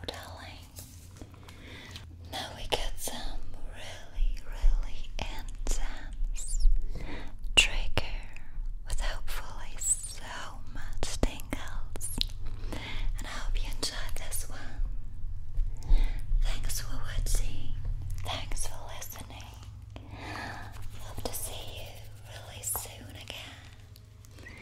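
A woman whispering close to the microphones, with a few small clicks between phrases.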